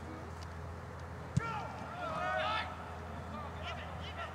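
A rugby ball kicked once with a sharp thud about a second and a half in, followed by shouting on the pitch.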